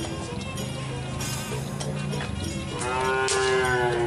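Madura cattle lowing. A long low moo begins about half a second in, then a louder, higher moo near the end falls slightly in pitch. Background music plays faintly underneath.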